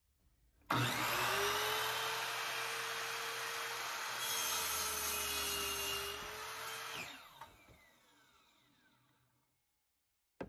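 Electric miter saw switched on with a sudden start, its motor whining steadily. Its blade cuts through a wooden board for about two seconds in the middle. The trigger is released about seven seconds in, and the blade spins down with a falling whine over the next two seconds.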